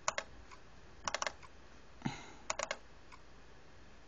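Clicking at a computer: four short groups of quick, sharp clicks from keys or buttons, with a softer thud about two seconds in.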